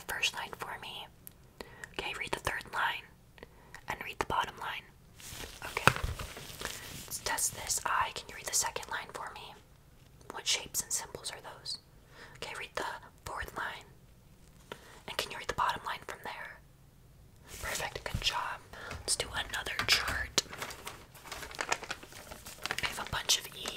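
A woman whispering close to the microphone, in short runs of words with pauses between them.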